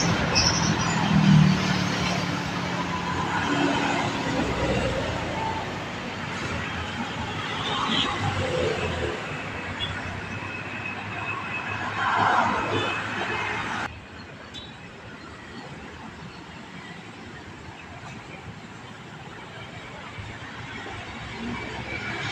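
Highway traffic passing close by. A container truck's engine and tyres are heard going past at the start, and a car swells past about halfway through. The level then drops suddenly to a quieter, steady traffic noise.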